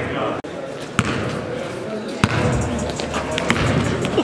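A basketball bouncing on a gym floor: three sharp bounces about a second and a quarter apart, over a steady background of voices in the hall.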